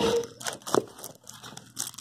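Plastic packaging bag crinkling in a few short rustles, with cardboard packing rubbing, as a bagged part is handled in its box.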